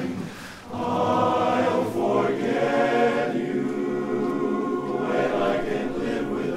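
Male barbershop chorus singing a cappella in close four-part harmony. The sound drops briefly just under a second in, then the full chorus comes back in louder with sustained chords.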